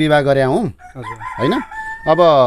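A rooster crowing from about a second in, ending on one long held note.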